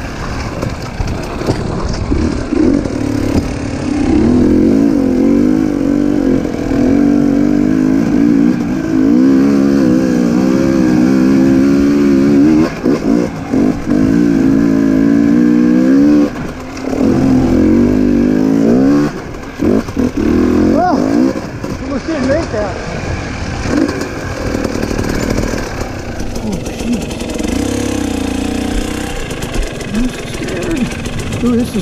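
Dirt bike engine running under load, its pitch rising and falling in quick waves with the throttle, strongest in the first half and easing off later.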